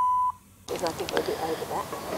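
A single steady electronic beep lasting about half a second, which cuts off about a quarter second in. Faint outdoor background with low voices follows.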